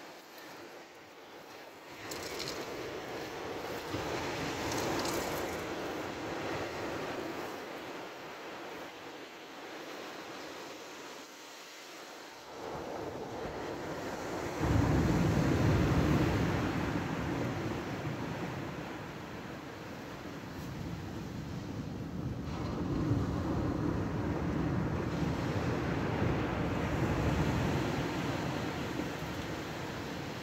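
Surf breaking and washing on a shingle beach, swelling and fading, with wind buffeting the microphone; a heavy low rumble comes in suddenly about fifteen seconds in and stays for much of the rest.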